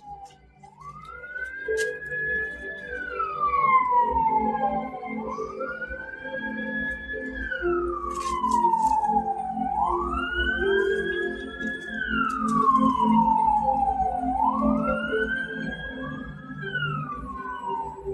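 A siren wailing: each cycle rises, holds high, then falls slowly, repeating about every four and a half seconds, four times in all, over a low rumble.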